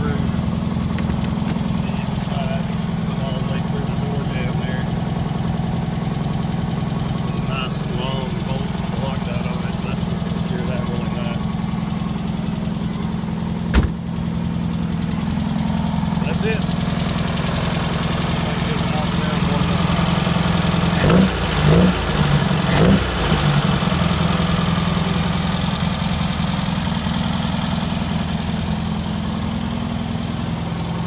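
A 1972 VW Baja Beetle's air-cooled flat-four engine idling steadily after warming up. A single sharp knock comes about halfway through, and three short rising-and-falling sounds follow a few seconds later.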